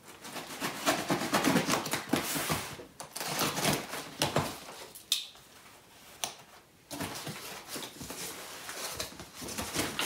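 Cardboard shipping box being opened by hand: flaps scraping and rustling in several bursts with sharp crackles, and a quieter pause a little past halfway.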